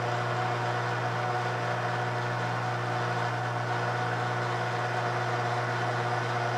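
Precision Matthews PM-1440GT metal lathe running in low range, an even steady hum with a few fixed tones, while a 5/16-36 tap is fed into the spinning brass case.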